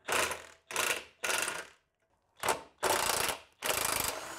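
Ratchet with a 12 mm socket undoing the exhaust flange nuts, in six short bursts of rapid ratcheting clicks with brief pauses between them.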